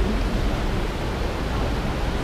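Steady rush of river water pouring over a low weir, an even hiss with no breaks.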